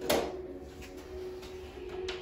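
A single short knock just after the start, then low room sound under a faint steady tone.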